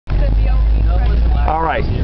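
Steady low rumble of a car's engine and tyres heard inside the cabin while driving, with a voice starting up near the end.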